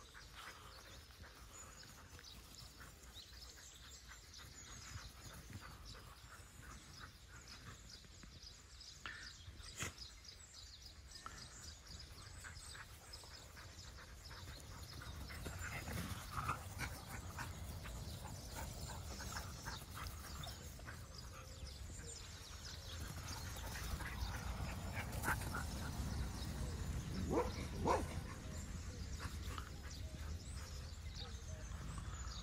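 Dogs playing and chasing each other on grass, with short dog yips and barks. The sound grows louder in the second half, and two short rising yelps come near the end.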